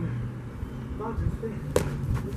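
A boxing glove punch lands once with a sharp smack, about three-quarters of the way in, over a low steady hum.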